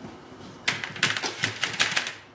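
Rapid clicking and clattering of a wire cooling rack and metal baking tray being handled and shifted on a steel counter. The clicks start about two-thirds of a second in and run quickly and unevenly.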